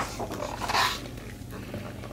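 A paper page of a picture book being turned by hand: a sharp click, then a brief rustling swish just under a second in.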